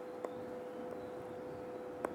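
Quiet room tone: a faint steady hiss with a steady electrical hum tone, and one small click shortly after the start.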